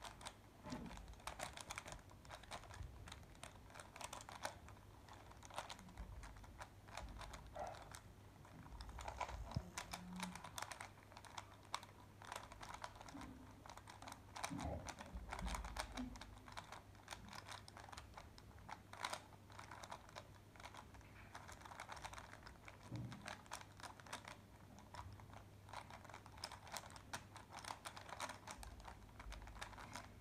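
3x3 puzzle cube being turned quickly during a speedsolve: a rapid, irregular run of plastic clicks as the layers snap round.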